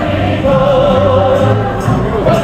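A callejoneada procession singing in chorus with musical accompaniment. In the first half a voice holds a note with a wavering vibrato, over a steady low bass line.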